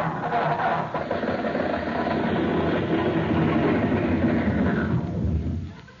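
Radio sound effect of a car engine being cranked and failing to start, running steadily for about five seconds and then stopping.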